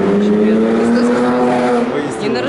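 A car driving past on the road, its engine note steady and rising slowly as it accelerates.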